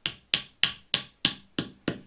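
Rubber mallet tapping a finned threaded insert into a drilled hole in a cedar stump: seven short, even taps, about three a second.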